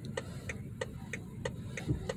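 BMW 530e's hazard-light indicator ticking in the cabin, an even tick-tock about three clicks a second. A soft low thump comes near the end.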